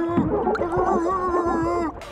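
A cartoon boy's long, gargling vocal cry made underwater, one steady held pitch with a wavering, bubbly edge, that stops just before the end.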